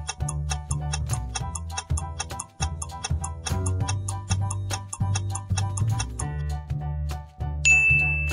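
Countdown-timer ticking, quick and even, over upbeat background music with a steady bass. The ticking stops about six seconds in, and a bright ding sounds near the end as the answer is revealed.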